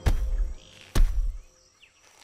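Two heavy thuds about a second apart, each with a short low boom, over faint chirping bird calls.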